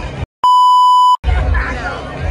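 A single loud electronic bleep, a steady high tone lasting under a second, edited into the soundtrack just after the audio drops to dead silence: a censor-style bleep. Crowd chatter and voices run before and after it.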